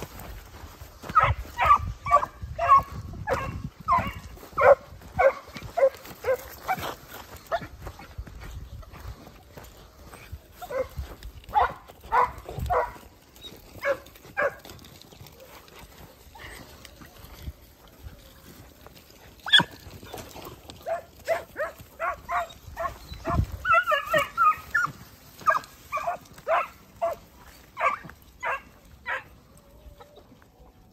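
Segugio Italiano scent hounds baying in runs of short, repeated calls, with a lull in the middle and several voices overlapping at once about 24 seconds in.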